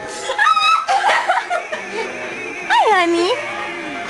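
Girls laughing and squealing over background music from a film on the television. About half a second in there is a short high squeal, and near three seconds a loud cry that slides down in pitch and back up.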